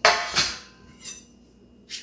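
Sheet-metal deep-dish pizza pan set down on a countertop: two metallic clanks about half a second apart, each ringing briefly.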